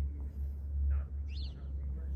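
A bird chirps once, a short high call sweeping down about a second and a half in, over a steady low rumble.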